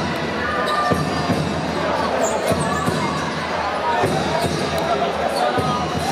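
Basketball being dribbled on a wooden court during live play, several bounces, over the steady voices and noise of an arena crowd.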